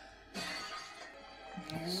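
Anime soundtrack: a sudden crash sound effect about a third of a second in, fading over about half a second, over background music. A low male voice begins near the end.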